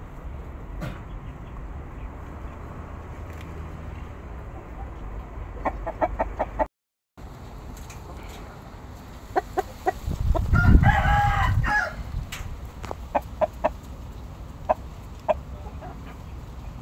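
A rooster crows once, loudly, about ten and a half seconds in, the call lasting a second and a half. Around it come clusters of short sharp clicks.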